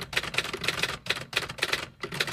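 Typing sound effect: a quick, irregular run of key clicks, several a second, pausing briefly about a second in.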